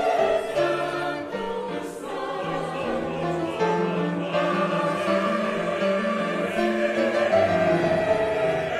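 Mixed choir of men's and women's voices singing a sacred choral piece in harmony, with held notes moving from chord to chord.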